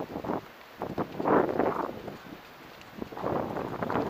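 Wind buffeting the microphone of a camera on a moving rider, coming in two gusts, with a few short knocks near the start.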